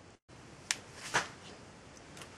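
Two light clicks, a little under a second in and again about a second in, from a shotgun magazine tube being handled, over faint room tone. A brief moment of total silence comes at the very start.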